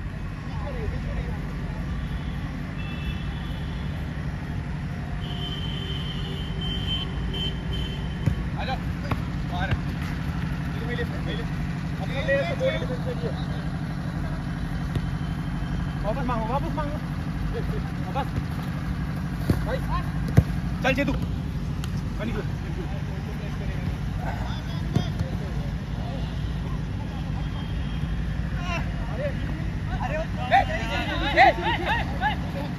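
Outdoor football-pitch ambience: players' distant shouts and calls, with a few sharp thuds of a football being kicked on artificial turf, the loudest about two-thirds of the way through, over a steady low rumble.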